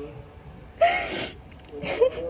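A woman crying: a sharp, loud sobbing gasp about a second in, and a second, shorter one just before the end.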